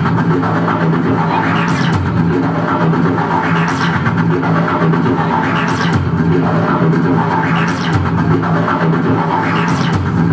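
Live band music played loud, with a steady bass line and a bright accent about every two seconds.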